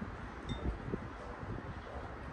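A metal spoon clinks once against a ceramic soup bowl about half a second in, a short bright ring, over soft close-up chewing sounds.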